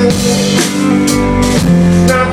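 Live rock band playing an instrumental passage with no vocals: drum kit with cymbal hits under sustained guitar notes.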